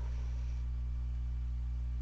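Steady low hum with a faint hiss under it, unchanging throughout.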